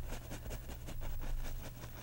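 Oil-paint brush bristles dabbing and rubbing on a canvas in a quick run of light, soft taps, over a steady low hum.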